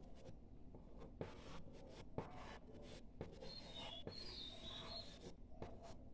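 Graphite pencil drawing on paper: faint scratching strokes as the outline is sketched.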